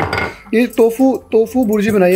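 A brief clatter of kitchenware on the counter right at the start, followed by people talking.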